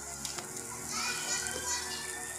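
Children's voices calling out in the background, with a rising cry about a second in, over steady music-like tones; two light clicks near the start.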